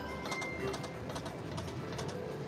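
Konami video slot machine spinning its reels: short electronic tones and ticks from the game over steady casino background noise.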